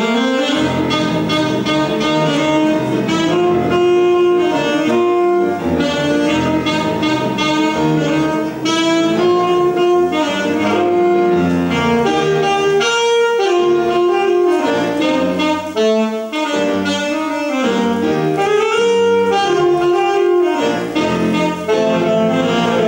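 Alto saxophone playing a melody of long held notes, with piano accompaniment underneath.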